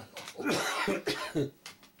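An elderly man coughing into his hand: one long rough cough about half a second in, then two shorter coughs.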